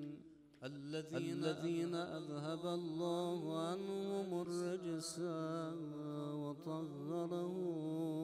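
A man's voice chanting Arabic religious invocations in a slow, melodic recitation with long held and ornamented notes, after a short breath pause about half a second in. These are the opening salutations of a Shia Muharram sermon: blessings on the Prophet and the Imams.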